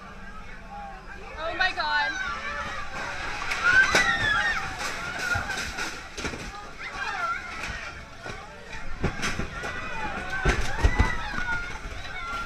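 Passengers on a small boat crying out and shouting in alarm as it heels over in rough water, over the rush and slosh of waves. Several heavy thumps come near the end.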